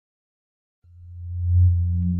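Intro of a song's backing track: after a short silence, a low electronic drone tone fades in and swells, holding one steady pitch.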